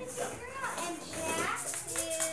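Toddlers' voices at play: high chatter with two rising-and-falling calls, about half a second and about a second and a half in.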